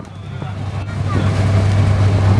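Steady low drone of a boat engine under way, with wind rushing on the microphone, rising in level over the first second.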